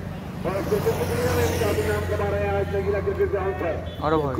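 A motor vehicle's engine running steadily, with a hiss about a second in, and voices near the start and end.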